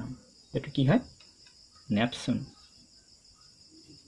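A steady high-pitched insect chorus, typical of crickets, in the background, with two brief spoken sounds from a voice, about half a second and two seconds in.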